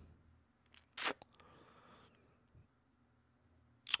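Near silence: room tone, broken by one short noise about a second in, followed by a brief faint hiss.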